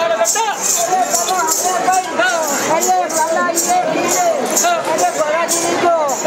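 Gavari folk dance music: voices singing over jingling metal percussion that beats about twice a second.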